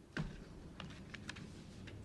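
A knock just after the start, then a few irregular clicks of a computer keyboard being typed on.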